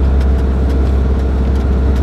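Steady low drone of a 1995 Fiat Ducato 2.5 TDI motorhome under way, heard inside the cab: the four-cylinder turbodiesel running at a constant pace, with road noise.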